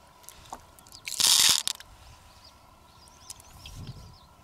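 A handful of pearls dropped onto a mussel shell: a brief, loud clattering rattle about a second in, with a few light clicks from the shells being handled.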